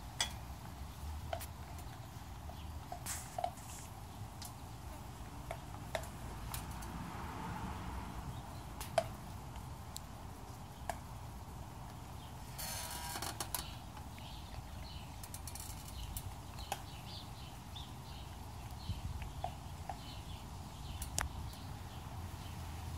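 Faint outdoor ambience with a steady low rumble and scattered small clicks, and a brief rustle about thirteen seconds in.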